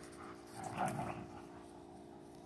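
An Old English Sheepdog panting briefly, a short breathy burst about a second in.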